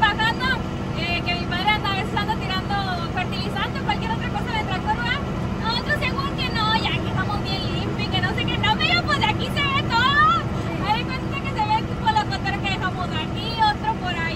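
A tractor's engine drones steadily, heard from inside its cab, under women talking all the way through.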